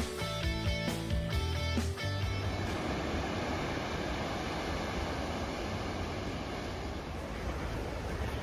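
Strummed guitar music for about two seconds, then a steady rush of surf breaking on a beach.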